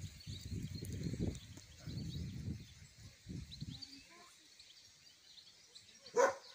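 Outdoor ambience: irregular low rumbling of wind on the microphone for the first three and a half seconds, with faint bird chirps, then quieter.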